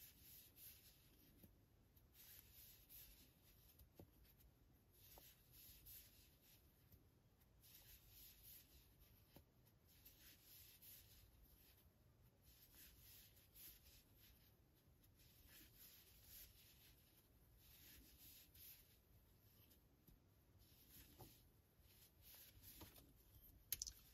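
Near silence with faint, irregular rubbing of yarn against a metal double-ended crochet hook as tunisian stitches are worked, and a few tiny ticks.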